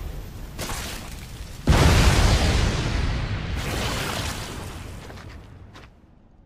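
Anime fight sound effect: a sudden heavy blast about a second and a half in, with a deep rumble that slowly fades out over the following seconds.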